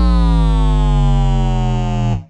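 Closing held note of a hip hop beat: a synthesizer tone over deep sustained bass, sliding slowly down in pitch.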